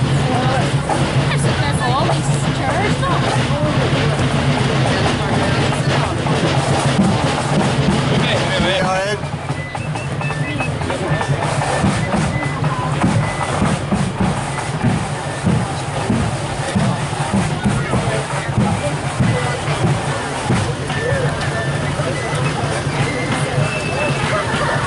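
Marching band music with drums under the chatter of a roadside crowd of spectators.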